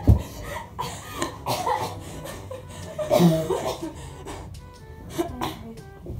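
Young women's short, cough-like vocal bursts and cries during rough play, with a sharp thump right at the start, over steady background music.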